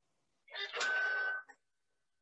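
A Toshiba e-Studio copier gives one steady, high electronic beep lasting under a second, over a short burst of noise, as its document feeder takes in the page for a scan.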